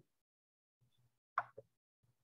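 Near silence over a video-call line, broken by one short sound about one and a half seconds in, with a smaller one just after it.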